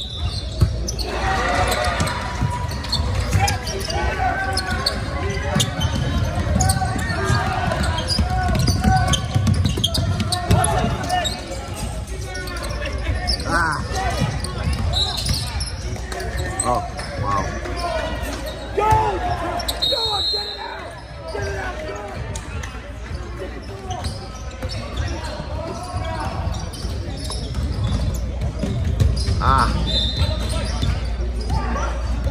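Basketball bouncing on a hardwood gym court during play, with a steady background of voices in the large hall.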